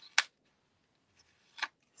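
Cardstock pieces being handled in the hands: a sharp tick just after the start and a softer one about a second and a half later, with near quiet between.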